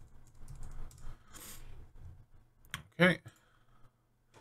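Computer keyboard typing: a run of quick, light key presses, then a couple of sharper clicks shortly before a single spoken "okay".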